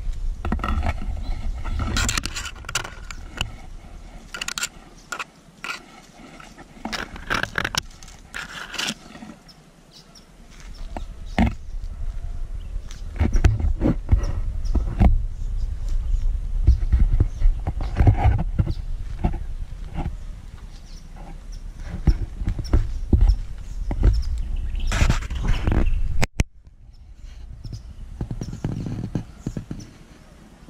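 Wind rumbling on the microphone, with rustling and crackling of leaves and twigs brushed close by, in many short bursts. The sound drops off suddenly near the end.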